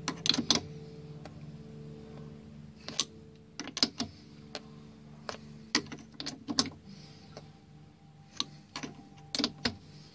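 A tap being turned by hand with a tap wrench, threading a drilled hole for a drawbar: irregular sharp metallic clicks and ticks, some in quick pairs, over a faint low steady hum.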